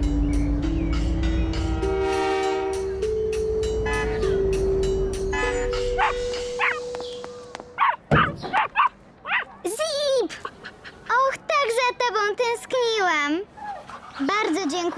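Background music with a slow stepped melody over a low rumble, fading out about six seconds in. Then an animated puppy yaps and whines in a run of short, pitch-bending calls, with a sharp knock about eight seconds in.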